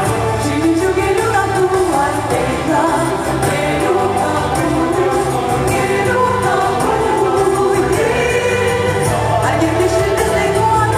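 Rock opera music: a choir singing over band accompaniment, at a steady level.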